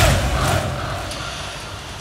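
A crowd of mourners striking their chests in unison (latm): one loud slap at the start, then fainter strikes about half a second and a second later, with crowd noise dying away.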